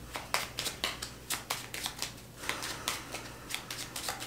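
Tarot cards being shuffled by hand in an overhand shuffle: a quick, irregular run of light card snaps and slaps, several a second.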